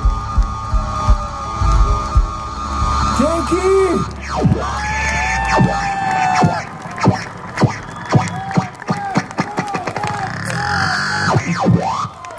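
A live rock band's final held chord with a deep bass drone fades out about halfway through. The concert crowd cheers, shouts and claps, with many short rising-and-falling calls.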